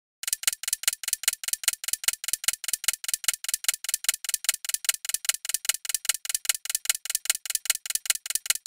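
Ticking-clock sound effect counting down the answer time: a rapid, even ticking.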